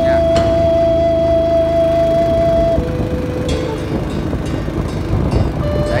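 Motorbike engine running with a steady whine. About three seconds in the whine drops to a lower pitch and the sound gets a little quieter, as the throttle eases.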